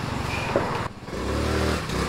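Honda Navi scooter's small single-cylinder four-stroke engine running, dropping off briefly a little under a second in, then revving up and back down as the rider works the throttle on its new CVT roller weights.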